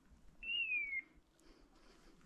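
A single clear whistled bird call: one note about half a second in that glides down slightly in pitch over roughly half a second, over faint background noise.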